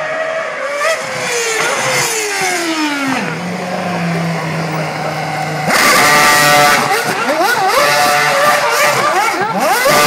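Formula 1 car engine, its revs falling away in a long downward glide over the first three seconds and settling low. About six seconds in it turns louder, revving rapidly up and down as the car spins doughnuts, with the rear tyres screeching and smoking.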